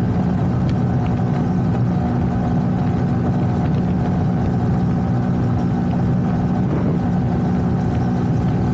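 KTM Duke motorcycle's single-cylinder engine running at steady revs while cruising at highway speed, about 112 km/h, heard from on board. A constant drone with no rise or fall in pitch.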